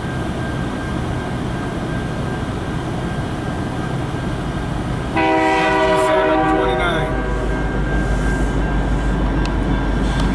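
A diesel locomotive running light, with no cars behind it, rumbles steadily as it approaches. About five seconds in it sounds its air horn, a chord of several notes held for about two seconds. A louder, deep engine rumble then goes on as it draws close.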